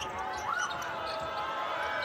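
Live basketball game sound in an arena: steady crowd noise with the ball bouncing and shoes squeaking on the hardwood court, including a couple of short squeals that rise and fall.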